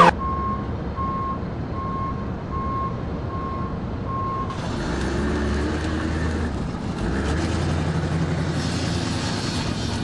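Vehicle reversing alarm beeping steadily, about six beeps at one every three-quarters of a second. It stops about four and a half seconds in, and an engine running with traffic noise takes over.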